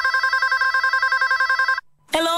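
Electronic telephone ring: a rapid trill that flips back and forth between two pitches, cutting off suddenly near the end.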